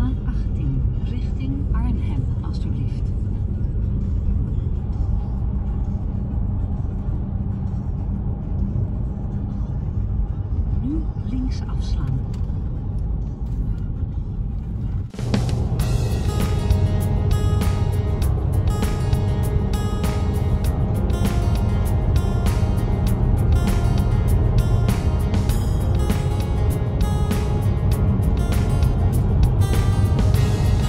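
Steady low road and engine rumble inside a moving Mercedes-Benz car's cabin. About halfway through it cuts off abruptly and background music with a steady beat takes over.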